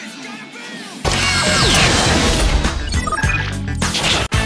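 Promo soundtrack: about a second in, a loud crash sound effect bursts in over music, with a falling whistling sweep through it.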